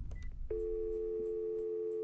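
A click and a short high beep, then a steady electronic tone like a telephone dial tone: two low notes held together without a break.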